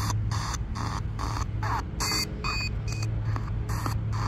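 A Ratakee pocket radio rigged as a DIY spirit box, sweeping through the AM band. It gives rapid chopped bursts of static and snatches of broadcast audio, about four a second, over a steady low hum.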